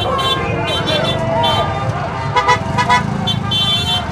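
Street crowd shouting and cheering over the low rumble of a truck engine, with short vehicle horn toots sounding again and again, including a quick run of toots past the middle.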